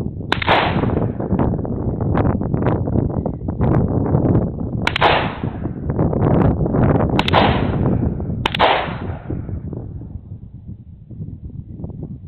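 Shotgun fired four times at unevenly spaced intervals, each shot trailing off in a rolling echo. Wind buffets the microphone throughout.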